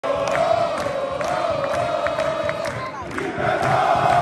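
A stadium crowd of football supporters chanting in unison, with rhythmic hand-clapping about twice a second. The chant dips briefly about three seconds in and then picks up again.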